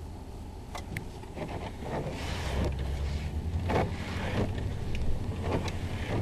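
Inside the cabin of a moving 1991 Cadillac Brougham: a steady low rumble of engine and road noise that grows louder about two seconds in, with several short rushing noises on top.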